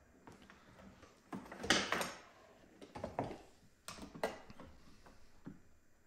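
A soldering station and its iron being handled and set down on a workbench among tools: several separate knocks and clatters spread over a few seconds, the loudest about two seconds in.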